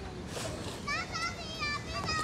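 Children playing and shouting, their high voices coming in about a second in.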